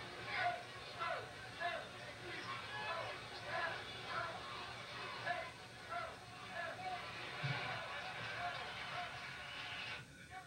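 Faint, indistinct speech from a television playing an old football game broadcast, heard through the TV's speaker across the room.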